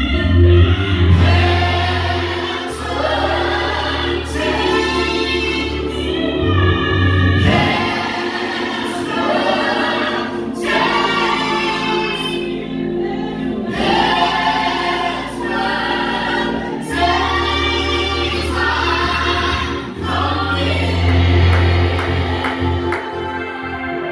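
Gospel choir singing with instrumental backing, over a deep bass that comes and goes in long stretches.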